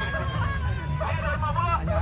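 Crowd of people talking and calling out over one another, with voices rising and falling over a steady low rumble.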